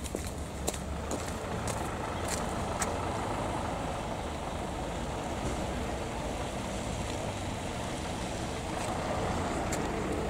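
Steady street traffic noise from vehicles on wet roads, with a few light footstep clicks in the first three seconds.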